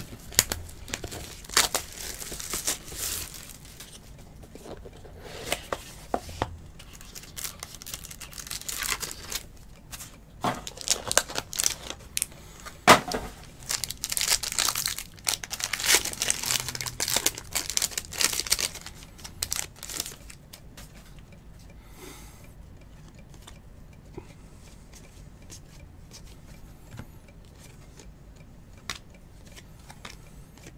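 Foil trading-card pack wrapper being torn open and crinkled by hand, in irregular crackling bursts that die down about two-thirds of the way through, leaving only faint handling noise.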